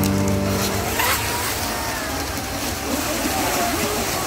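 Radio-controlled racing boats running at speed on a pond, their motors whining and rising and falling in pitch as they pass, over a continuous hiss of water spray.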